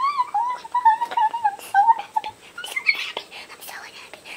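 A woman's voice, sped up into a high, chipmunk-like pitch, whining and muttering in wavering, unintelligible phrases for about two seconds. Soft clicks and rustles follow.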